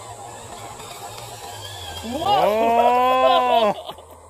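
A man's drawn-out exclamation of "ooh", starting about two seconds in: it glides up, holds for about a second and a half, and breaks off, over a faint steady background.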